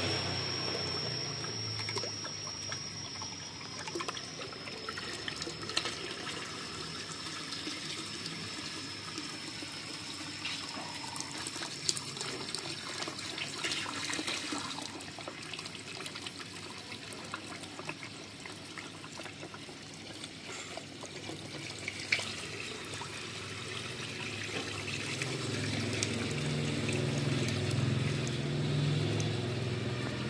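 Water running from a garden hose into a small cement fish pond, a steady pouring and trickling splash on the pond's surface as it is topped up.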